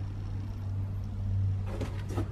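A steady low hum, with a couple of short knocks near the end.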